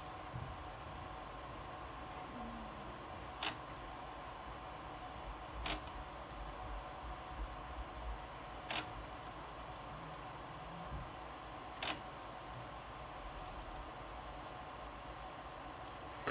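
A few sharp, separate clicks from an Akai S2000 sampler's front-panel controls as the program name is shortened character by character, over a faint steady hum.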